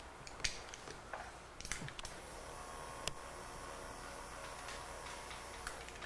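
Faint scattered clicks and light taps from handling a Bestine rubber cement thinner dispenser and cotton swab over a drawing on vellum, with a faint steady hum underneath from about two seconds in.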